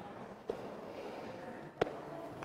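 Quiet room noise of a seated church congregation, with a small knock about half a second in and a sharper, louder knock near the end, typical of hymnals being taken from wooden pew racks and opened.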